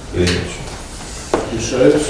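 Men's speech, broken by a single sharp knock about a second and a half in.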